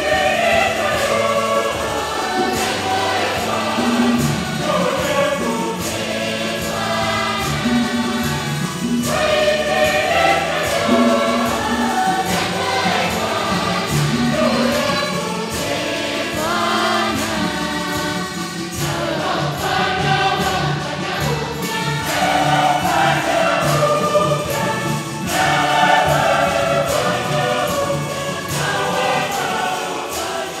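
A church choir singing a hymn with instruments: a repeating bass line and a steady percussion beat. The singing comes in phrases with short breaks between them.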